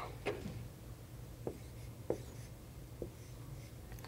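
Chalk writing on a blackboard: about four short, sharp taps and light scrapes as symbols are written, over a faint steady room hum.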